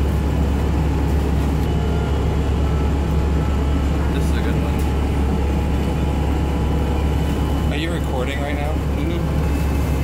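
Steady low drone of a moving passenger vehicle heard from inside its cabin, with a person's voice briefly near the end.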